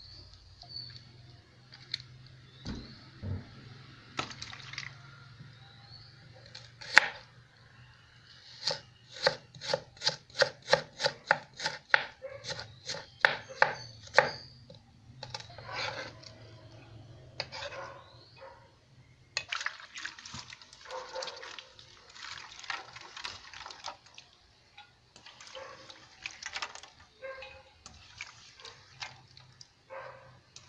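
Kitchen knife chopping onion on a wooden cutting board. There is a single sharp strike about seven seconds in, then a run of quick, even chopping strokes, about three a second, for several seconds. Later comes a denser stretch of scraping and rustling.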